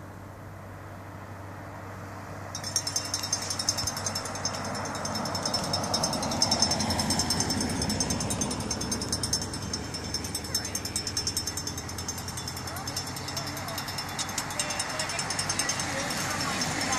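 A car drives past on an asphalt road, its tyre and engine noise swelling a few seconds in and then fading, under a steady low hum. From a couple of seconds in there is also a high, steady fizzing with fine rapid ticking.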